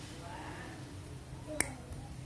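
Fujiya needle-nose pliers snipping through a thin plastic-insulated wire: a single sharp snap about one and a half seconds in as the jaws cut clean through, a sign the cutting edges are sharp and undamaged.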